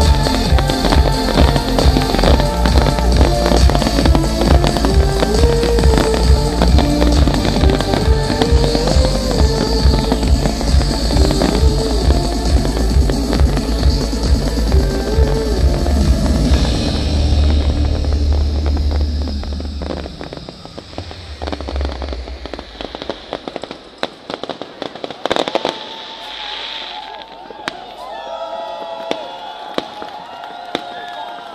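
A fireworks display with its show music played loud over it: a heavy steady beat and melody with repeated firework bangs and crackles, the music fading out over a few seconds after about 17 seconds in. Afterwards only scattered firework bangs and crackles remain, with people's voices near the end.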